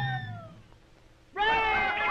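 A falling slide in pitch fades out, a brief hush follows, and about halfway through a cartoon cat's voice starts a long, loud meow with a wavering pitch.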